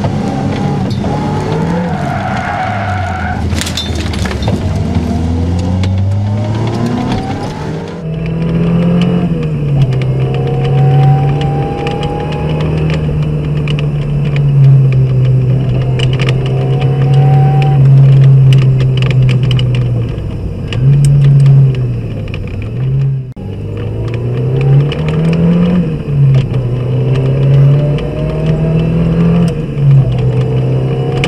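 Ford Sierra RS Cosworth's turbocharged 2.0-litre four-cylinder engine, heard from inside the cabin, revving hard and dropping back again and again as it pulls through the gears and lifts for corners.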